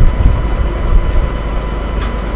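Steady low background rumble with a faint steady hum.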